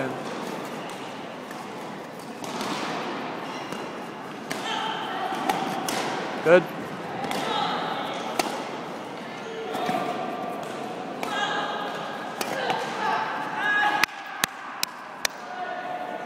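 Badminton doubles rally: sharp clicks of rackets striking the shuttlecock, with a quick string of them near the end, over a bed of voices echoing in a large hall.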